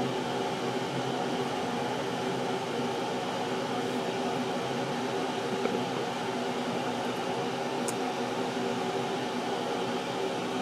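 A fan running in the background, a steady whir with a low hum: the air conditioner's fan.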